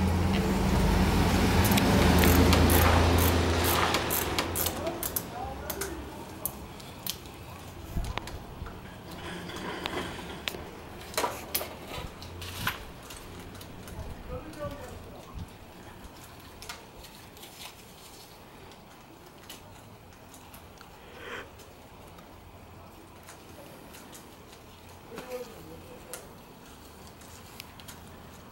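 Loud rustling and brushing close to the microphone for the first few seconds, then scattered clicks and light metal taps of a socket ratchet working the bolts of the stock front brake master cylinder on a motorcycle handlebar.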